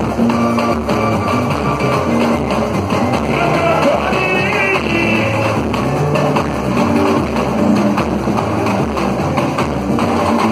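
Samba-enredo played live by a samba school's band: percussion keeping a steady, even beat under plucked strings.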